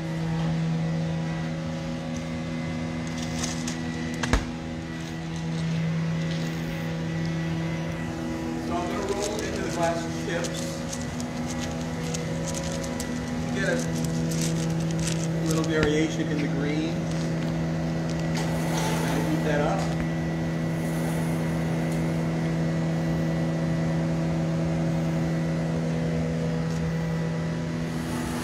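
Steady, loud hum of glassblowing studio furnace and glory-hole blowers running, with a sharp click about four seconds in and a few lighter clinks of tools and glass later on.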